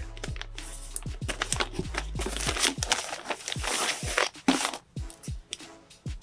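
Frosted plastic zip bag crinkling and rustling as a folded t-shirt is handled and slid out of it, with many small sharp ticks and a louder burst of crinkling in the middle. Quiet background music runs underneath.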